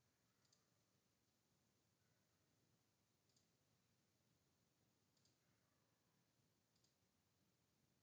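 Near silence with four faint computer mouse clicks, a second or two apart.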